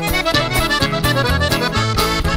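Band music in an instrumental passage: an accordion melody over bass notes and a steady drum beat.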